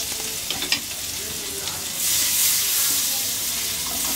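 Butter sizzling as it melts and bubbles in a hot non-stick pan, a steady hiss that grows louder about halfway through.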